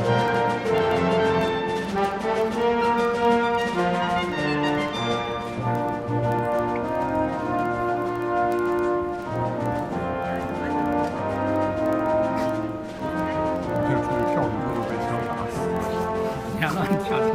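Brass music playing slow, held chords that shift every second or two, at a steady level.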